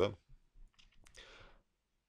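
A man's voice ending a word, then in the pause a faint mouth click about a second in, followed by a short breath in.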